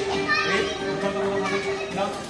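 Adults and a young child talking and calling out together over background music with a held note.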